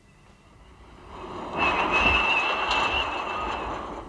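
Jet aircraft on a runway: engine noise swelling up over the first second and a half into a loud, steady roar with a high whine on top, easing slightly near the end.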